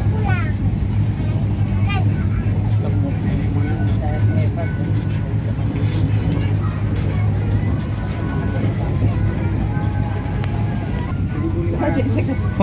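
Steady low engine drone of an open-sided tourist road train, heard from on board as it drives along, with faint passenger voices.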